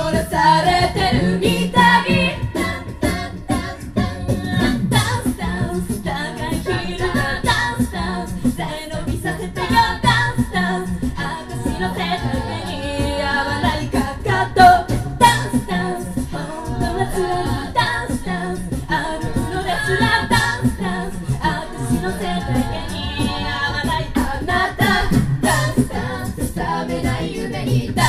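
Live a cappella group singing in harmony into microphones, women's voices leading over a low sung bass line, with vocal percussion hits keeping a steady beat.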